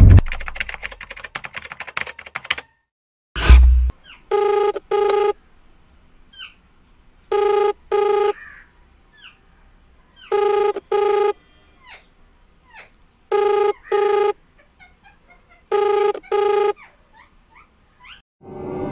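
Telephone ringback tone heard through a mobile phone: a low double beep repeating about every three seconds, five times, while the call waits to be answered. Before it, a fading music tail ends and a single loud hit sounds about three and a half seconds in.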